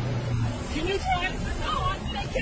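Low, steady vehicle engine rumble heard inside the cab, under hurried dialogue.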